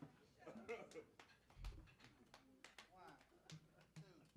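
Near silence between songs in a club: faint, indistinct voices with a few small clicks and a short low thump about a second and a half in.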